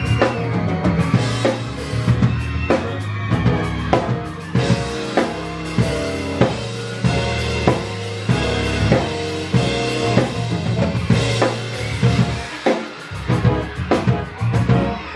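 Live band music led by a drum kit playing a steady, driving beat of kick and snare over sustained low pitched notes. The low end drops out briefly near the end before the beat comes back in.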